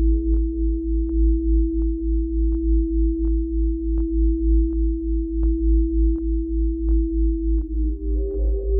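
Elektron Analog Four synthesizer playing ambient electronic music: one held steady tone with a second tone pulsing just above it, over a throbbing low bass pulse about four times a second and a short click about every 0.7 seconds. Near the end the held note changes and new tones come in.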